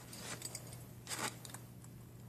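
Faint clicks and rustles of small plastic and metal Beyblade parts being handled for assembly, with a slightly louder rustle a little over a second in, over a faint steady low hum.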